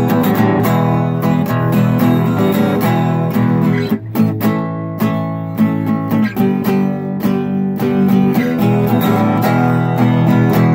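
Acoustic guitar strummed in a steady rhythm, an instrumental break in a blues song with no singing.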